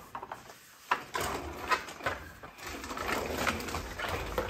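Plastic baby walker rolling over a laminate floor: a knock about a second in, then a couple of seconds of rattling from its wheels and frame as it moves.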